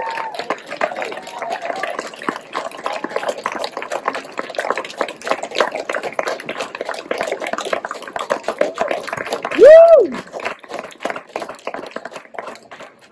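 Audience applauding and cheering at the close of a speech: a dense patter of clapping with scattered voices. One loud whoop, rising and then falling in pitch, stands out near the end.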